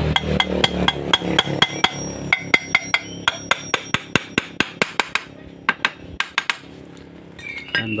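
Hammer tapping a metal gear case cover on a scooter's rear final drive, a quick series of about thirty sharp, ringing taps at roughly five a second that stops about six seconds in. The taps seat the cover onto its new gasket.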